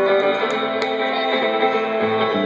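Live band playing an instrumental passage, guitar to the fore over bass and drums, with a couple of sharp drum or cymbal hits.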